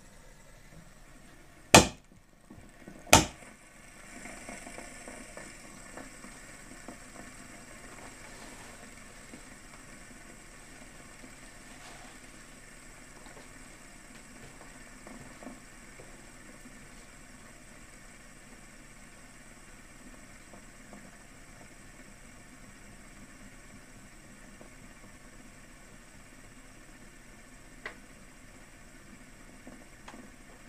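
Two sharp clicks a little over a second apart from the fidget spinner against the glass tabletop, then a metal fidget spinner spinning on the glass with a faint steady whir that slowly fades. There is one faint tick near the end.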